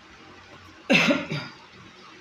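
A man coughing: one loud cough about a second in, followed shortly by a softer one.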